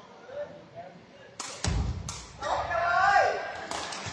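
Sepak takraw ball kicked hard three times during a serve and rally: sharp smacks about a second and a half in, half a second later, and near the end. A player's falling shout comes between the second and third hits.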